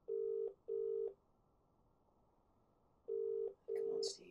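UK-style telephone ringing tone, the double 'brr-brr' a caller hears while the line rings: two short burrs at the start and two more about three seconds in.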